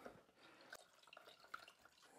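Very faint drips and small splashes of water as a melamine sponge is dipped and squeezed out in a plastic bowl of water, a few scattered little ticks.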